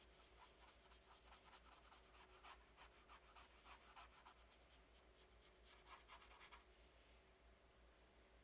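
Faint, quick scratchy strokes of a small paintbrush scrubbing blue paint onto the painting, many strokes in a row that stop about a second and a half before the end.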